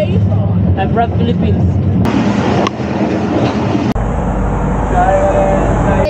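Running noise inside a passenger train carriage with people talking, heard in short clips that change abruptly about two and four seconds in.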